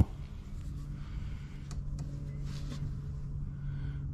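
A steady low hum with a couple of faint clicks about two seconds in.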